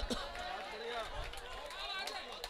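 Faint chatter of audience voices in a pause between the poet's lines.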